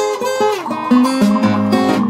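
Acoustic guitar playing a blues accompaniment in a gap between the sung lines of a song.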